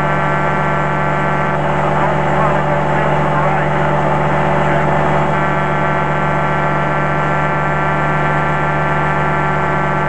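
Light aircraft engine droning steadily at cruise, heard loud from on board in flight. An indistinct voice cuts in from about one and a half to five seconds in.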